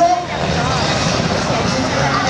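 Sikorsky S-70C twin-turbine helicopter flying a display pass overhead: a steady, loud rotor and engine noise.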